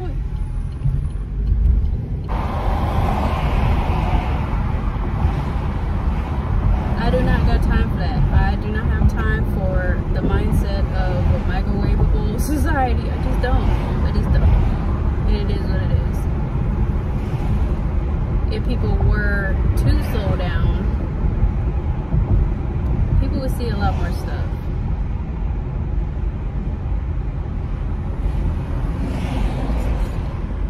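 Road and engine noise inside a moving car's cabin: a steady low rumble, with a hiss that jumps up about two seconds in and holds.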